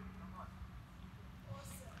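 A quiet pause in speech: faint room tone with a low steady hum, and a soft breath just before the end.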